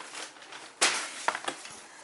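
Newspaper being handled and cleared off a desk: a faint rustle, one short sharp rustle about a second in, then a couple of light taps.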